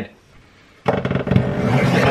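X-Acto paper trimmer cutting through paper, a rasping scrape that starts about a second in and lasts about a second.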